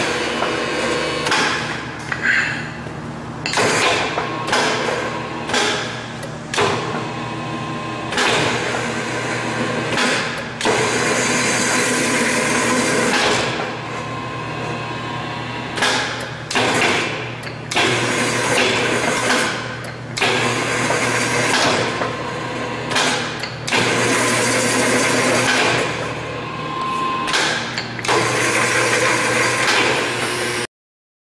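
KRB programmable rebar bender running, its turntable drive cycling again and again: loud mechanical spans of one to three seconds over a steady electric motor hum, with knocks between the cycles.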